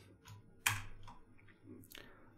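A few light computer keyboard keystrokes, with one sharper click about two-thirds of a second in; they are the key presses that run a Jupyter notebook code cell.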